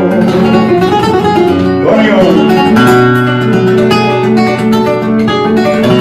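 Flamenco guitar playing a solo passage between sung verses, with strummed chords and plucked notes.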